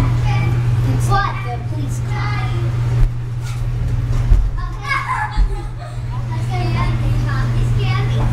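Children's voices and shouts in a busy play area, heard from inside a plastic play tube, over a steady low hum. A few sharp thumps fall about three to four and a half seconds in.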